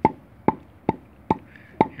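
A split piece of firewood knocked against a brick five times, about two knocks a second, each a sharp knock with a short hollow ring. The hollow ring is the sign of a real low moisture content: the wood is well seasoned.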